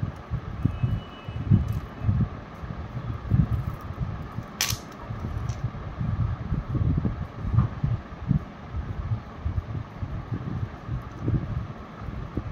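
Irregular low rumble of air buffeting the microphone over a faint steady hum, with one sharp click about four and a half seconds in.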